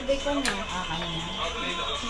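Television sound in the room: voices and background music from a TV drama. A single sharp click about half a second in.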